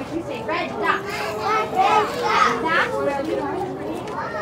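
Young children's high-pitched voices chattering, louder in the middle.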